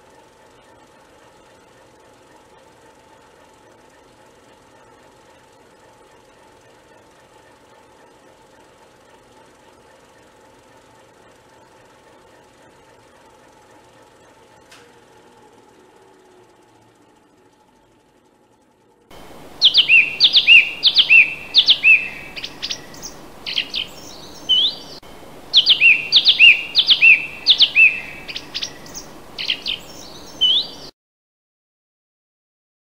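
A songbird singing: from about two-thirds of the way in, two bouts of quick, loud, descending whistled notes a few seconds apart, over a steady background hiss. Before that, only a faint steady hum that fades out.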